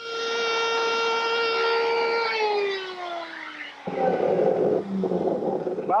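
Electric router's high-speed motor running at a steady high whine, then winding down in a long falling pitch after it is switched off. About four seconds in, a rougher, noisier sound takes over, with a short break near the end.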